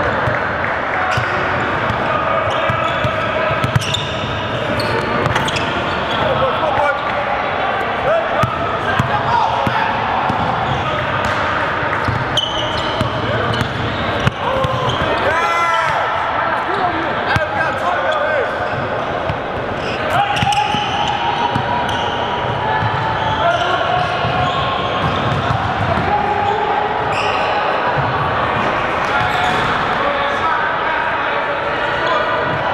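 Live gym sound of a basketball scrimmage: a basketball bouncing on a hardwood court, with players and onlookers talking and calling out, echoing in a large hall.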